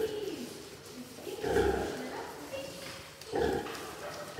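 Pigs grunting at a sow's udder while her piglets suckle, with three grunting calls spaced about a second and a half to two seconds apart.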